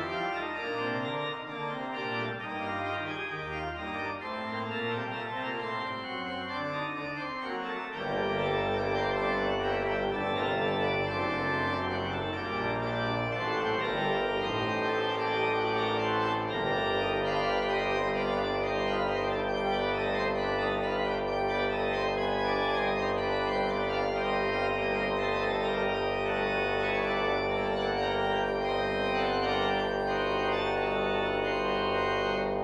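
Church organ playing a chorale-based piece. A lighter, moving passage gives way about eight seconds in to a louder, fuller sound with a deep bass. From about sixteen seconds it settles into broad sustained chords over a held low note.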